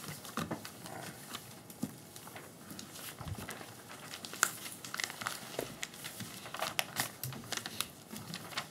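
Paper rustling and shuffling near desk microphones, with scattered small clicks and one sharper tap about halfway through.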